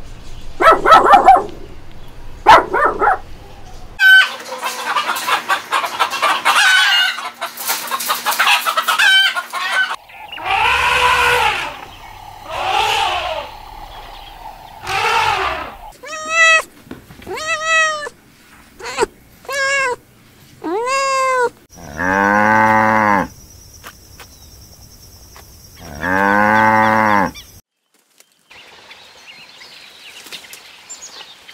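A run of separate animal calls. A puppy yaps a few times in the first three seconds; later a kitten mews in a quick series of about six short, high calls; and two long, loud calls come near the end.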